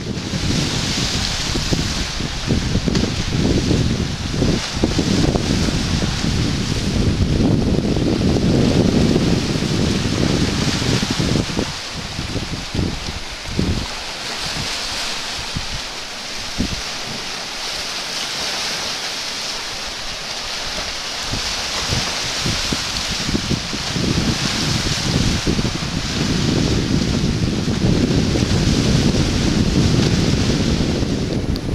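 Wind buffeting the microphone over the steady hiss of small sea waves washing onto a rocky shore. The gusty rumble eases for several seconds midway and picks up again near the end.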